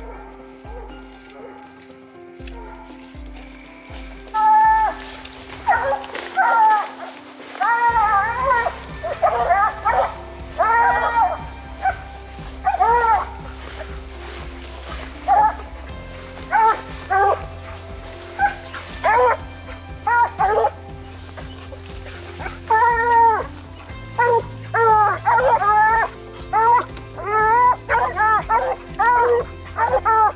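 Coonhounds barking treed: repeated short bawls that rise and fall in pitch, coming thick and fast from about four seconds in. Background music with a steady bass runs underneath.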